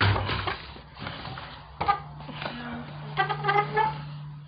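Brief, indistinct bits of a voice at the start and about three seconds in, a sharp knock just under two seconds in, and a steady low hum from about halfway.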